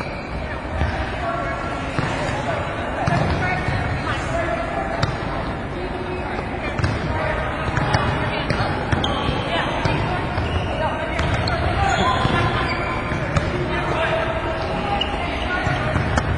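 Volleyballs being passed and set back and forth: a steady run of irregular smacks of ball on forearms and hands. Players' voices are heard underneath.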